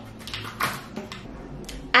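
A few soft clicks and rustles as metal hair clips are opened and slid out of freshly retwisted locs.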